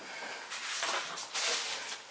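Soft rustling and handling noise of items being moved, coming in a few irregular swells.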